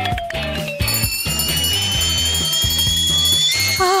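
Background music with a steady beat, overlaid with comic sound effects: a falling whistle that ends about a second in, then a long whistle rising slowly in pitch like a kettle coming to the boil, cutting off near the end. It is a cartoon cue for a burning-hot mouth after a chili drink.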